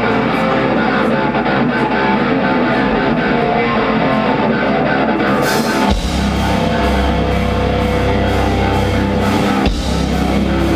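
Metalcore band playing live: distorted electric guitars, joined by cymbals about five seconds in and, a second later, the full band crashing in with heavy drums and a thick low end.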